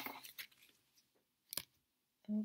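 Playing cards being handled off a wooden table: faint rustles and light scrapes fading out, then a single sharp tick about one and a half seconds in.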